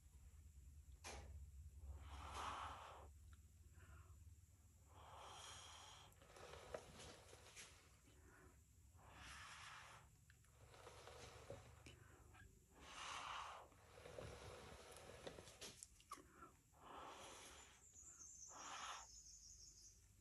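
Faint puffs of breath blown through a jumbo paper straw onto wet acrylic paint to spread a bloom, about six puffs of a second or so each, a few seconds apart.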